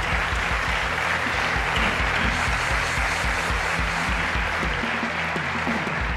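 Studio audience applauding steadily over background music with a regular low beat.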